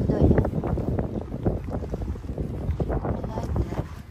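Wind buffeting the microphone in uneven gusts, a low rumbling rush.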